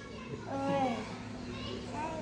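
A toddler's voice: a short, high, falling vocal sound about half a second in, while he plays on top of a man lying on a bed.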